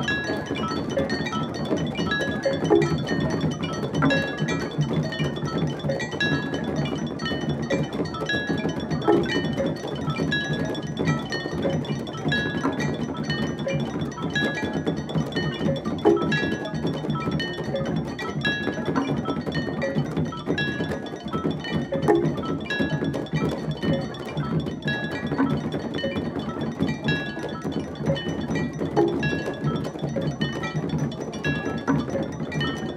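Balinese gamelan ensemble playing: a fast, dense interlocking percussion texture with bright metallic tones recurring about every second and sharper accents every few seconds.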